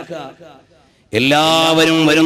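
A man's voice trails off, and after a brief pause a man begins a long chanted note held at a steady pitch.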